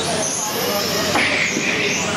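1/12-scale electric RC cars running on an indoor carpet track: a high, thin motor whine rises over the first second and then falls as a car speeds up and slows. It sits over a steady din of voices in the hall.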